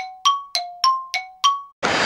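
A chime sound effect: quick dings alternating between a lower and a higher tone, about three a second, each ringing briefly, stopping about three quarters of the way through.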